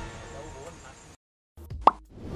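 Faint background sound fading out into a moment of complete silence, then one short, sharp rising blip near the end: an editing transition sound effect.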